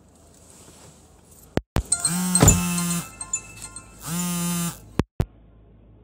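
Mobile phone ringing: two bursts of a held electronic ringtone chord, the first about a second long and the second a bit shorter, with sharp clicks and brief cut-outs before and after each.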